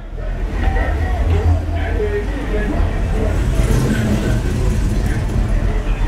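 Low, steady engine rumble of a car rolling slowly past, with people talking in the background.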